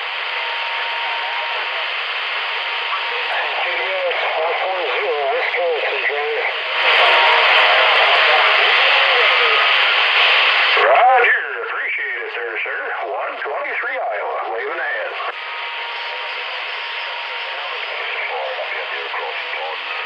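CB radio receiving weak long-distance voice traffic on 27.365 MHz (channel 36): several faint, garbled voices under steady hiss and static, with a thin steady whistle at times. The hiss grows louder for a few seconds in the middle.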